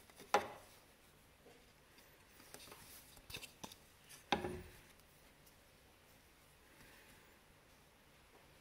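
Handling noise from weaving on a rigid heddle loom as a shuttle is worked through the warp: two sharp knocks, one just after the start and one about four seconds in, with a few softer clicks between them.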